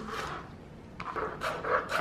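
Chef's knife slicing a stalk of green onion on a plastic cutting board: a quick run of short cuts, several a second, starting about a second in.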